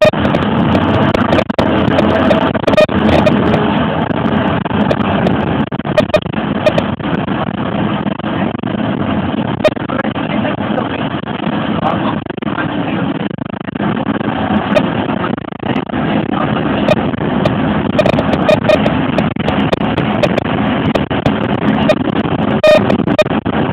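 Bus engine and road noise heard from inside the moving bus through a mobile phone's microphone, running steadily with scattered short knocks and rattles.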